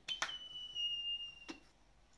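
Hand vacuum pump on a plastic cupping cup: two sharp clicks, then a thin high whistle of air through the cup's valve that falls slightly in pitch for about a second and a half, and another click as the pump comes off.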